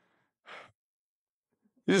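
A single short exhale of breath about half a second in.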